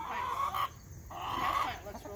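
Backyard hens clucking softly, two short spells of about half a second each, the second starting just past halfway.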